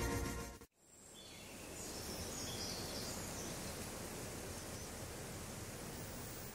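Background music fades out in the first second, and then a steady outdoor nature ambience fades in: an even hiss with a few faint high bird-like calls.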